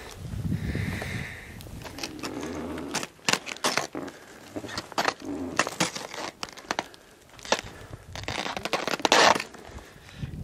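Irregular crackling, clicking and scraping of clothing, gear and snow close to a handheld camera's microphone, sharpest and densest in the second half.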